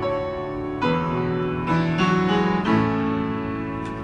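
Grand piano being played: sustained chords that change about once a second, the last one left to ring and fade near the end.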